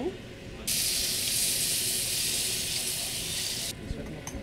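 Food sizzling in a hot pan on a kitchen stove: a loud, steady, high hiss that starts abruptly about half a second in and cuts off sharply near the end.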